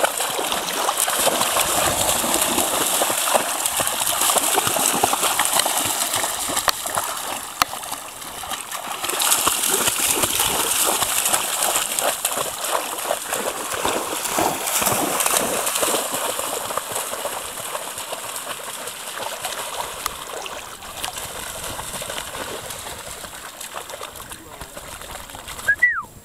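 Pharaoh hounds running through shallow water, a continuous churn of splashing that eases off near the end.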